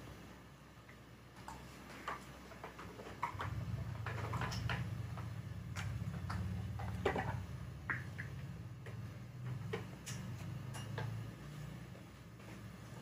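Scattered small clicks and soft rustles of close-up handling, as gloved fingers press cotton pads and a lancet works at the skin during acne extraction. A low steady hum comes in about three seconds in.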